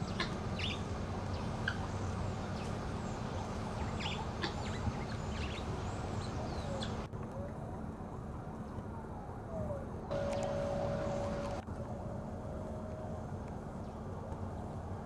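Short, sharp bird calls in the first half over a steady low background hum, then a distant siren wailing, its pitch sliding down and up before holding a steady tone twice near the end.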